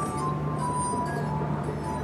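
Glass harp: wet fingertips rubbing the rims of water-tuned wine glasses, each ringing a pure, sustained tone. The held notes follow one another in a slow melody.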